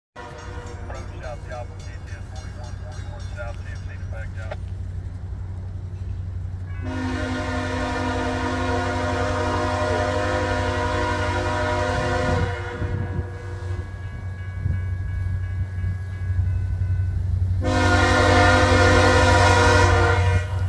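Freight locomotive horn sounding at a grade crossing: one long blast of about five seconds starting about seven seconds in, and another starting near the end, over a steady low rumble.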